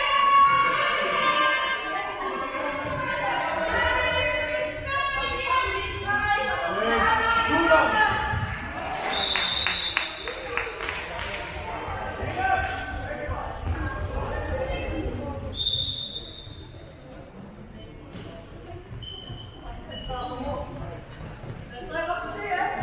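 Indoor handball play echoing in a large sports hall: players' voices calling out, a handball bouncing and thudding on the court floor, and a couple of short high squeaks, about ten and sixteen seconds in.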